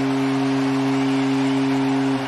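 The Blue Jays' home run horn at Rogers Centre sounding one long, steady, deep foghorn-style blast to celebrate a home run, over the cheering of the crowd.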